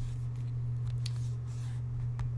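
Steady low hum with faint background noise and no speech.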